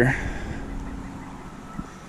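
Shallow creek water swishing around an arm reaching into it, settling to a soft, steady wash.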